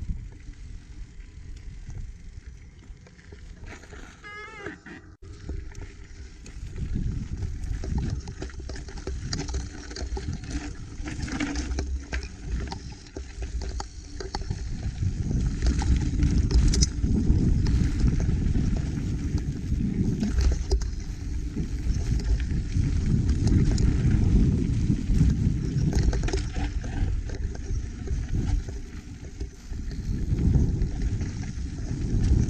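Mountain bike riding down a dirt trail: tire noise on loose dirt and rattling over bumps, with wind on the microphone, louder from about six seconds in. A brief wavering high tone sounds about four seconds in.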